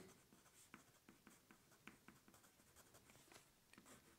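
Faint pencil writing on paper: a string of small, short scratches as words are written out.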